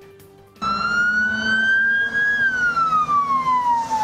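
Emergency vehicle siren starting suddenly about half a second in: one slow wail that climbs for nearly two seconds and then falls away.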